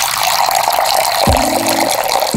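A steady stream of water pouring into a stone mortar already partly full of water, splashing and bubbling.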